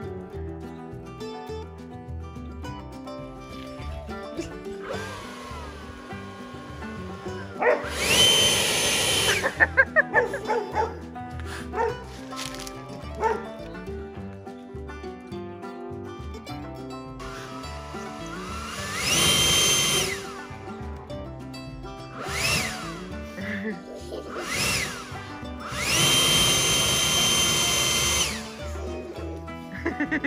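Handheld leaf blower run in about half a dozen short blasts. Each spins up with a rising whine, blows steadily for one to three seconds, then cuts off. The longest and loudest blasts come about a quarter of the way in, two-thirds of the way in and near the end. Background music plays throughout.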